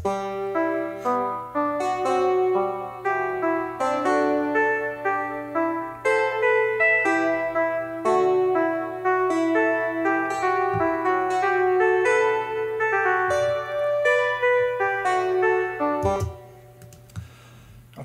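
Software synthesizer tracks playing back a melody of short pitched notes in several parts at once, stopping about two seconds before the end.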